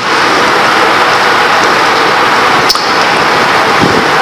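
A loud, steady hiss of noise like static, cutting in and out abruptly, with one brief click a little after halfway.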